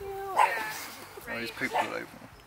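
Young piglet squealing: two short, high, wavering squeals, the first near the start and the second just past halfway.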